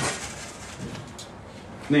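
The fading end of a thud as a small cast-iron camp oven is set down on a table, then low background sound with one faint click about a second in.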